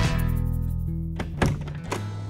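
Background music ending on a held chord that fades away, then a single thunk about one and a half seconds in as a van's door handle is pulled and the latch releases.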